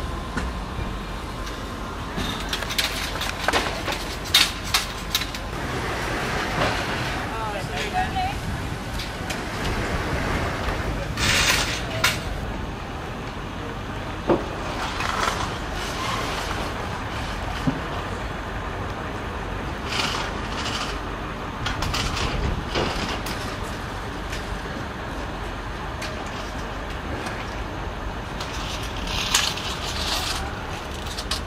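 Outdoor street ambience: a steady low rumble of traffic with scattered knocks and clicks and faint indistinct voices.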